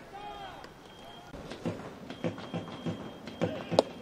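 Baseball stadium crowd with scattered calls and claps, then a sharp smack near the end as a fastball lands in the catcher's mitt for a swinging strikeout.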